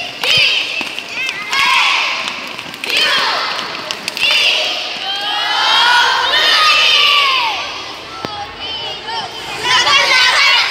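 A crowd of children shouting and cheering, many high-pitched yells overlapping, loudest around the middle.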